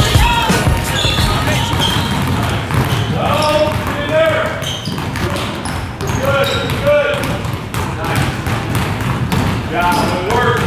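Basketballs dribbled on a hardwood gym floor: repeated, irregular, overlapping bounces.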